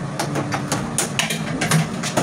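A quick run of short clicks and rustles, as of small objects being handled and moved about, over a steady low hum.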